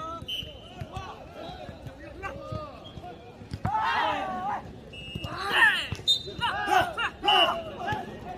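A jokgu rally: the ball is struck by feet and bounces on the turf with short thuds, while players shout to each other. The loudest part is several shouts in the second half as the point is won.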